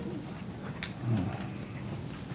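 Quiet room tone picked up by an open microphone, with a faint steady hum, a small click just before a second in and a brief low murmur just after.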